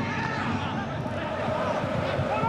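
Players' voices calling out on the pitch in an empty football stadium, heard faintly over the open ambience of the ground with no crowd noise.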